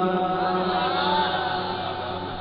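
A man's chanted Quranic recitation through a microphone and loudspeakers: the long held note ending a phrase fades away over the two seconds into echo.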